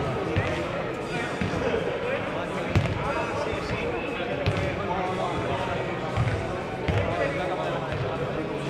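Voices echoing in a large sports hall, with a few scattered thuds of a ball bouncing on the hard court floor.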